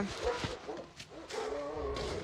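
A dog giving a few short barks or yips, and whining faintly near the end.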